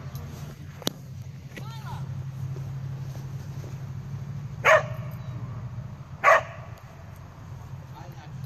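Two short, sharp dog barks about a second and a half apart, past the middle, over a steady low hum.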